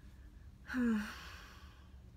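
A woman sighing once, a short voiced sigh that falls in pitch, a little under a second in.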